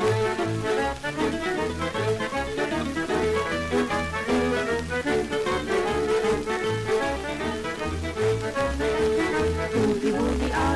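Instrumental break of a 1946 boogie-woogie cowboy song played from a Sonora 78 rpm record: a small band accompaniment over a steady pulsing bass line, with no singing.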